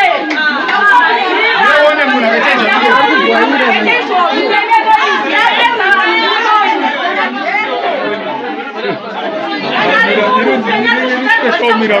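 Many people talking at once over one another: a dense crowd chatter.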